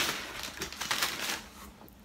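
Rustling and crinkling of packing material as a plastic spray bottle is lifted out of a cardboard shipping box, in irregular bursts, loudest at the start and again about a second in.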